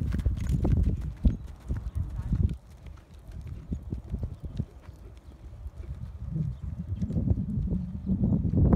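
Hoofbeats of a ridden horse on arena sand: dull thuds, loud for the first two and a half seconds, then fainter as the horse moves off, and growing again near the end.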